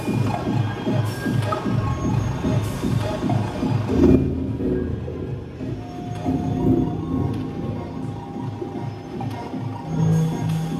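Live electronic beat music played from a table of gear, a fast run of bass notes over a full mix. About four seconds in the high end drops away and the track carries on lower and sparser, with a few held notes.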